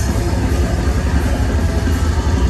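Loud live technical death metal from a full band: distorted extended-range electric guitar over drums, dense and heavy in the low end.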